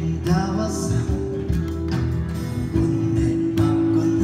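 Live band playing a Taiwanese folk song: a singer with acoustic guitar, and drum-kit hits.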